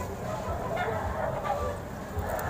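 Chickens clucking in short calls, with a low uneven rumble on the microphone.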